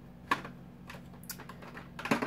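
Light clicks and taps of makeup products being handled and picked up: one sharp click about a third of a second in, then a few fainter ticks a little past a second in.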